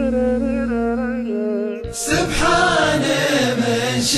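Chanted vocal music: a solo voice sings a wavering, ornamented line over a steady drone, and about two seconds in a bright hit brings in a louder, fuller chorus of voices.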